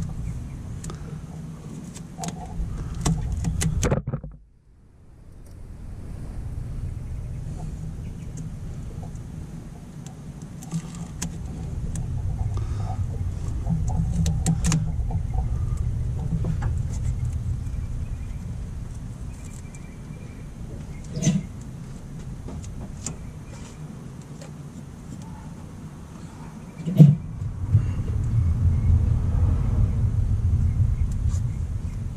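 Hands wrapping electrical tape around an automotive wiring harness: small crackles and clicks of tape and wires being handled, over a steady low rumble, with a sharp knock near the end.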